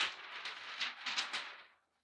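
Sheet of butcher paper rustling and crinkling as it is handled after being lifted off a heat press, an irregular crackle that dies away near the end.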